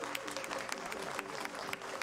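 Scattered applause from a small stadium crowd, many irregular hand claps, over faint background music.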